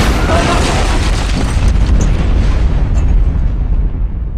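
Explosion sound effect: a sudden blast that carries on as a long, heavy rumble, slowly thinning out over several seconds.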